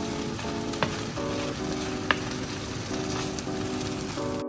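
Glass noodles and shredded vegetables sizzling in a frying pan as they are stirred with wooden chopsticks. There are a few sharp clicks of the chopsticks against the pan, with soft background music underneath.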